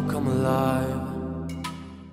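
A held, chant-like sung tone used as a music sting, swelling and then fading out over about two seconds, with a short click near the end.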